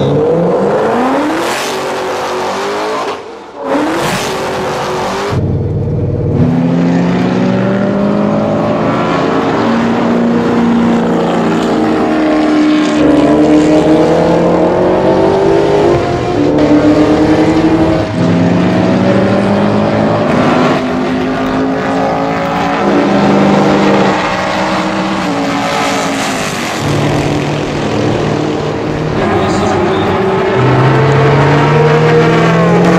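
Ford GT's supercharged 5.4-litre V8, tuned to about 740 horsepower, accelerating hard through the gears. Its pitch climbs and then drops at each upshift, over and over. For most of the time it is heard from inside the cabin.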